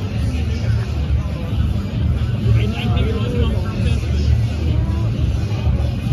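Crowd of people chattering, many voices overlapping, over a steady low rumble.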